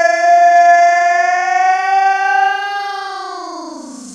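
A single sustained, siren-like electronic tone closing a house track after the beat has dropped out, held almost level, then sliding down in pitch and fading over the last second.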